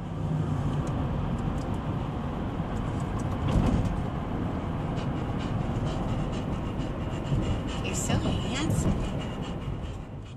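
Steady road and engine noise inside a moving car's cabin, with scattered clicks and a short rising-and-falling tone about eight seconds in.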